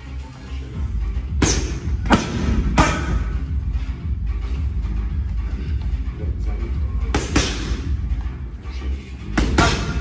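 Strikes smacking into handheld Thai pads: three sharp hits about two-thirds of a second apart, another pair of hits a few seconds later, and two more near the end. Underneath runs background music with a heavy bass.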